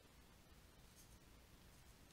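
Near silence: faint room tone with light scratching of a stylus drawing a line on a pen tablet.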